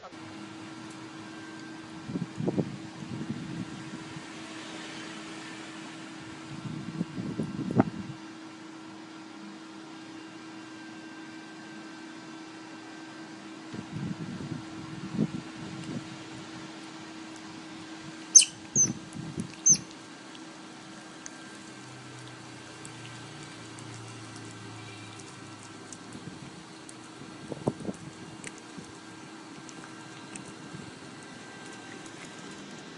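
Pet otter squeaking and chirping in short bursts, five or so times, with three sharp high squeaks a little past the middle. A steady low hum runs underneath.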